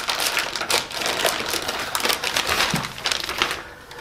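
Clear plastic wrapping crinkling and crackling as it is handled and pulled off a router, a dense run of irregular crackles that eases off near the end.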